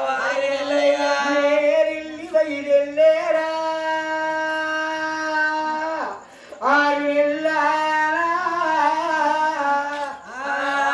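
A man singing a folk chant unaccompanied, in long drawn-out held notes, with a short break for breath about six seconds in.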